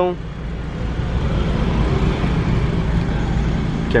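Fiat Fiorino's 1.4-litre flex engine idling, heard from inside the van's cab as a steady low rumble.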